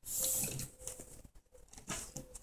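Faint rustling and handling noises from hands moving objects on a tabletop: a brief noisy rustle in the first half second, then a few soft small clicks.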